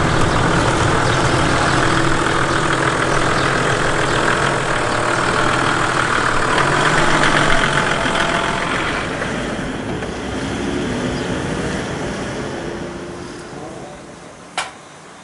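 Toyota Landcruiser Troopcarrier's engine running steadily at low speed, growing quieter over the last few seconds.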